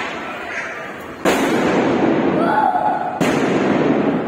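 Diwali firecrackers going off: two sudden loud bursts about two seconds apart, each followed by a long rush of noise.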